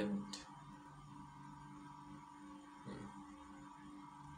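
Quiet room tone with a faint steady hum, the tail of a spoken word at the very start and a faint click about a third of a second in.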